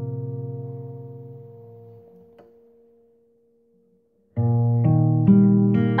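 A guitar chord left ringing and slowly fading away, then a second or so of near silence before strummed guitar chords come back in near the end.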